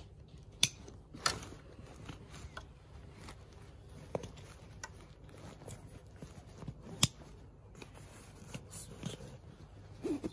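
Plastic side-release buckles and nylon webbing straps on a Bushbuck Destroyer hunting pack being fastened and pulled tight by hand: a few sharp clicks, about half a second in, a second later and again about seven seconds in, among softer ticks and strap handling.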